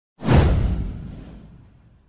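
A whoosh sound effect for a title animation: one sudden rush with a deep low rumble under it, starting a moment in and fading away over about a second and a half.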